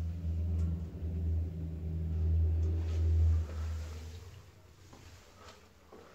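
Dudley Tri-shell high-level toilet cistern and its flush pipe giving a low rumbling drone of running water that dies away about three and a half seconds in.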